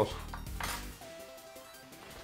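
Opened metal sprat tin and cutlery clinking against a tabletop as the can is set aside, with a short rustle of a paper napkin about half a second in.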